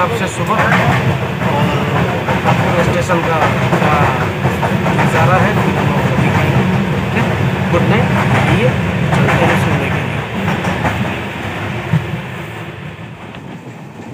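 Inside a moving Indian Railways sleeper coach: the steady rumble and clatter of the carriage running on the track. The rumble drops away over the last few seconds as the train comes to a station.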